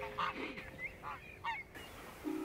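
Geese honking on the water, several short calls in a row, the last pair about a second and a half in.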